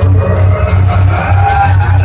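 Mariachi-style heavy metal band playing live: loud amplified music over a heavy, steady bass beat, with pitched melody lines above it.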